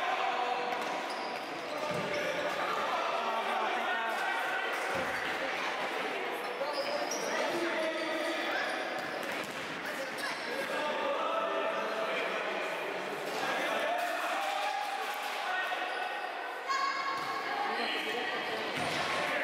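Futsal ball being kicked and bouncing on a hard sports-hall floor, a few sharp thuds in a large hall, with voices calling out over the play.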